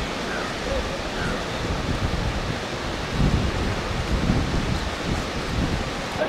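Wind buffeting the microphone in uneven gusts, strongest about three to five seconds in, over a steady rushing of water from a large waterfall.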